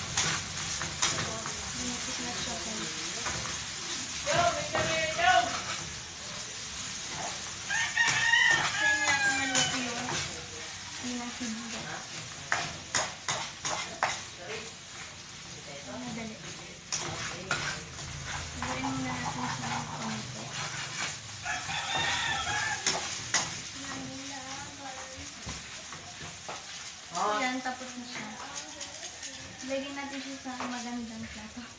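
Noodles stir-frying in a wok over a gas burner: a steady sizzle with a spatula scraping and clacking against the pan, in quick clusters of clicks about midway. A rooster crows several times.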